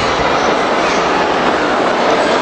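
Loud, steady din of a crowded indoor sports hall, with many voices blending into an even wash of noise.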